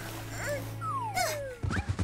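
Cartoon whimpering and whining sounds, with one long falling whine, over a steady low hum. A few thumps follow near the end as a rabbit character lands on the ground.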